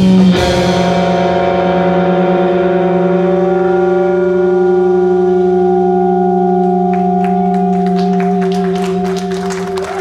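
Electric guitar and bass holding one long sustained note to close a rock song, with a slight waver in the pitch near the end. Over the last few seconds, drums and cymbals come in with scattered hits.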